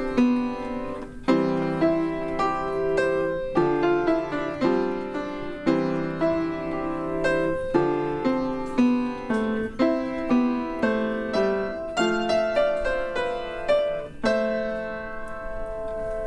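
Solo upright piano played with a slow melody over chords, the notes struck roughly once a second and left to ring. Near the end a chord is held and fades.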